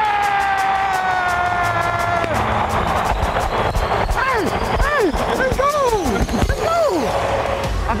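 A man's excited yelling: one long held shout that slowly falls in pitch, then a string of short whoops that each rise and fall, over background music.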